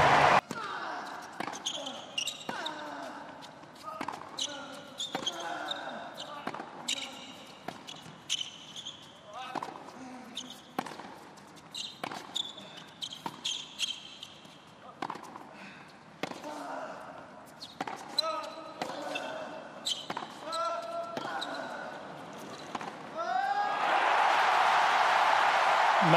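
Tennis rally on a hard court: the ball is struck and bounces again and again, making a long run of sharp pops, with shoes squeaking on the court. About two and a half seconds before the end, the crowd breaks into loud cheering and applause as the point is won.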